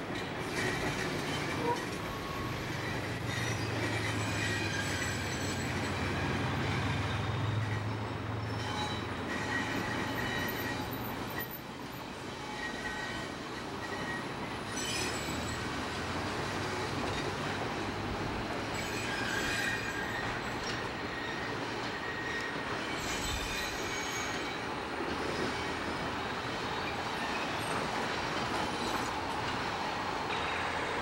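Passenger train rolling slowly across a steel truss bridge, its wheels squealing now and then in high-pitched bursts over a steady rumble. The low drone of the diesel locomotive fades out about eleven seconds in.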